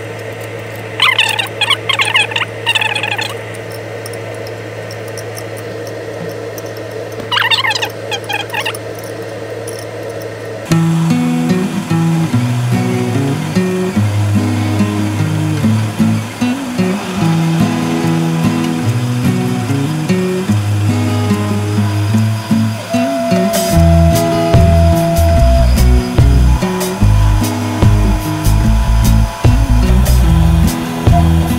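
Two short squeaky bursts from the hold-down clamps on the milling table being tightened, over a steady hum. About a third of the way in this gives way abruptly to background music with guitar.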